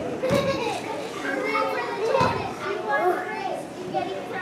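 Many children's voices chattering and calling out at once, no single clear speaker, with two low thumps, one just after the start and one about halfway through.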